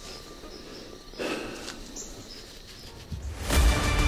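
Quiet outdoor field ambience with faint high chirping, then music comes in near the end with a deep low hit.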